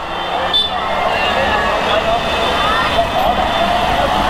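Street crowd noise: many voices talking and calling out at once over the steady rumble of motorbike and car traffic.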